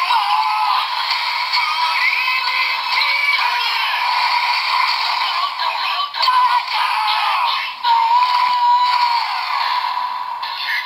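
DX Dogouken Gekido toy sword with the Primitive Dragon Wonder Ride Book attached, playing its electronic voice calls "Baki-Boki-Bone", "Gaki-Goki-Bone", "Dragon" and "Ittou Ryoudan" over a backing song. The audio comes from the toy's small built-in speaker and sounds thin, with no bass.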